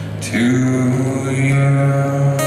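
Live acoustic performance: a man singing, coming in on a new note about a third of a second in with a slight upward scoop and holding it, accompanied by acoustic guitar.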